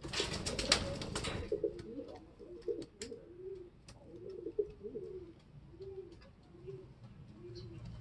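Domestic racing pigeons cooing: a run of short, low, arching coos repeated about every half second. A brief burst of rustling at the start as a pigeon is handled.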